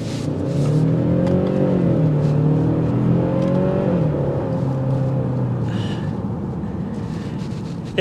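Kia Stinger GT-Line's turbocharged four-cylinder engine revving up under hard acceleration. Its pitch climbs as it pulls, drops at gear changes about two and four seconds in, then holds a lower steady note that fades toward the end.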